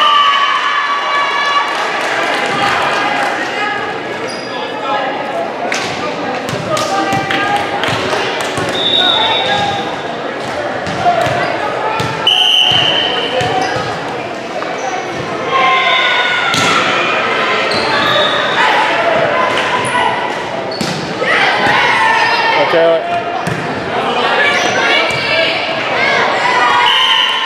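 Volleyball play in a gym: the ball being hit and bouncing on the hardwood, with raised voices calling out. Everything echoes in the large hall.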